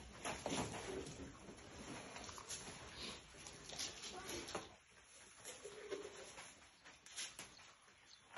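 Faint rustling and scattered taps of loose hempcrete mix being pressed by hand into a wooden block mould, with a few short clucks from chickens.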